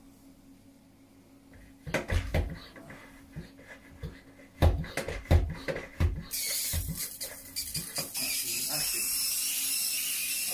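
A run of sharp knocks and thumps, then, from about six seconds in, the steady high hiss of a pump-up pressure sprayer misting liquid from its wand nozzle onto carpet.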